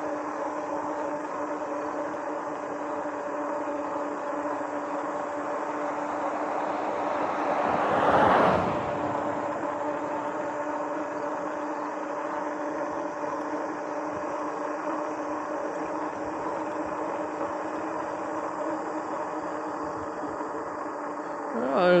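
Riding noise of a RadRover fat-tyre electric bike cruising on pavement: a steady rush of wind and tyre roar with a constant hum. About eight seconds in, a louder whoosh swells and fades.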